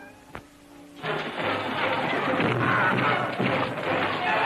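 Film battle-scene soundtrack: a dense mix of soldiers fighting, thuds and music that starts suddenly about a second in, after a near-quiet moment with a single click.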